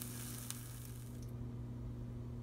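Rolled vegetable omelet sizzling faintly in a nonstick frying pan, the sizzle cutting off a little over a second in, with a steady low hum underneath.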